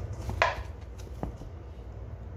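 Hands kneading soft bread dough in a stainless steel bowl: a short slap of dough about half a second in, then a light sharp knock on the bowl a little later, over a steady low hum.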